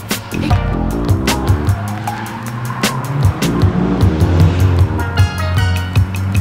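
Music track with a steady beat, over a Nissan 240SX (S13) drifting with its tyres squealing as the car slides sideways.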